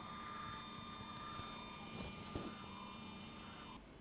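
Motor of an iOptron iAFS2 electronic inline telescope focuser running, a steady whine of several high tones over a low hum. It cuts off suddenly shortly before the end.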